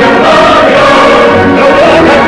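A choir singing a song with instrumental accompaniment, the voices holding long notes.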